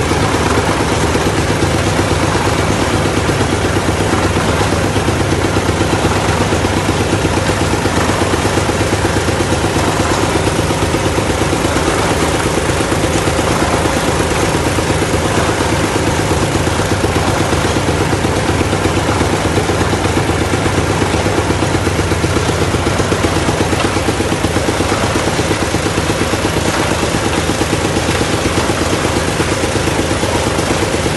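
Engine of a borehole drilling rig running steadily at a constant speed with a fast even pulse, as the rig drills and circulates muddy water through the mud pit.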